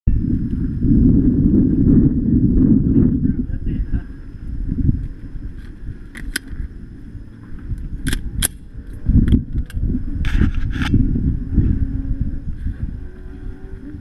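Low rumbling noise on a body-worn camera's microphone, loudest in the first few seconds, with a few sharp clicks about six, eight and ten seconds in.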